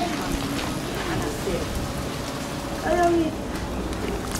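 Open wood fire crackling, with scattered small pops and ticks over a steady hiss, as breadfruit roast whole in the flames.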